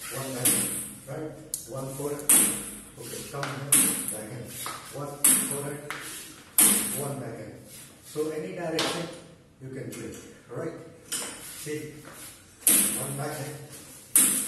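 A table tennis bat repeatedly strikes a ball held on a homemade spring-loaded wire trainer, in alternating forehand and backhand strokes. Each hit is a sharp crack, coming roughly every second and a half, with a longer pause past the middle.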